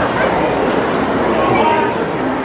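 Baseball crowd in the stands, a steady babble of many voices with a few short shouts from individual fans above it, the longest near the end.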